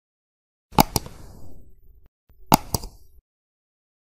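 Two computer-mouse clicks about 1.7 s apart, each a quick press-and-release pair. This is the click sound effect of an animated subscribe-button and bell graphic.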